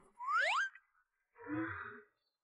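Comedic cartoon sound effect: a quick rising glide in pitch, two rising tones together, lasting about half a second. About a second later a shorter, duller sound follows.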